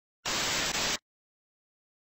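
A short burst of TV-static hiss used as a glitch sound effect, starting about a quarter second in. It lasts under a second, with a brief break near the end, and cuts off suddenly into silence.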